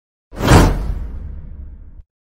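Whoosh sound effect from an animated subscribe-button intro. It surges in suddenly about a third of a second in and fades into a long low rumble, then cuts off abruptly.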